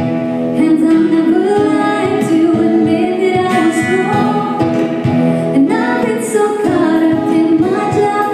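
A woman singing a slow pop song live through a PA, accompanied by strummed acoustic guitar and keyboard.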